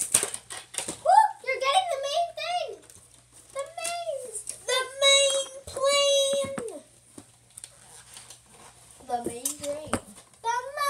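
A girl's voice vocalizing without clear words, in sliding and long held tones like singing or humming, with a pause before a short sound near the end. A few sharp clicks of toy packaging being handled come at the start.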